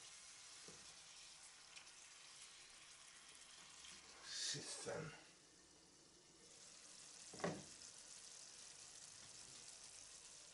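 Faint sizzling of vegetables stewing in a frying pan, with a short scraping noise about four to five seconds in and a single knock about seven and a half seconds in.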